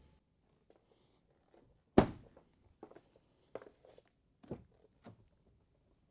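A car door shutting with a single heavy thunk about two seconds in, followed by a handful of lighter footsteps and knocks over the next three seconds.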